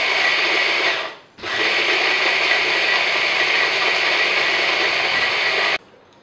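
Electric hand blender with a mini-chopper bowl chopping parsley: the motor runs with a steady whine, stops about a second in, starts again and runs about four seconds, then cuts off suddenly near the end.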